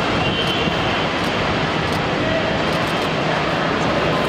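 Jet aircraft engine noise: a steady rushing sound at an even loudness.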